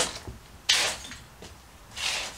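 A footstep crunching on a floor littered with broken tile and debris, a short sharp crackle about two-thirds of a second in, with another crunch near the end.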